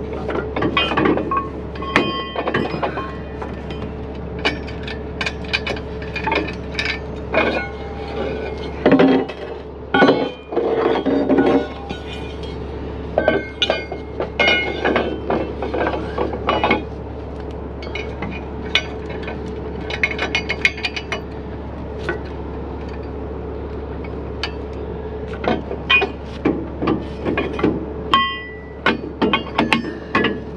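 Steel wrecker underlift forks and receivers being handled and fitted: irregular metal-on-metal clanks and clinks, some knocks ringing briefly, over a steady hum.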